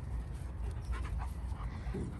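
A dog panting, over a steady low rumble.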